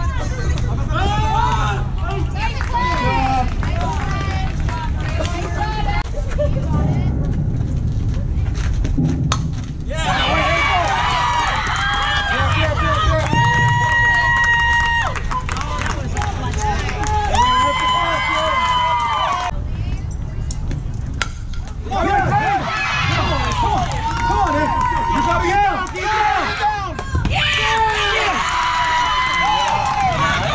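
Girls' voices shouting and chanting softball cheers, several voices overlapping, with two long held high calls about halfway through.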